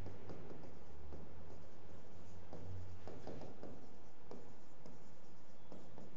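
A stylus writing on the glass of an interactive display board: a string of faint light taps and short strokes as a phrase is written out.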